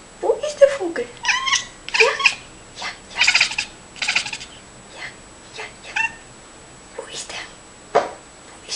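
A house cat making a run of short chirps and meows, about a dozen, most of them in the first half and some broken into a quick stuttering chatter. This is the cat vocalizing at a bird it has spotted outside.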